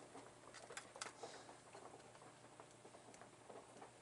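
Near silence: faint room tone with a low steady hum and a few light clicks and taps from hands handling things at the workbench, the clearest about a second in.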